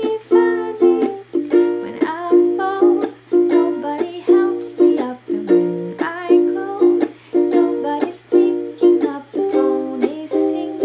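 Ukulele strummed in a steady rhythm, about two strums a second, with a woman singing over it.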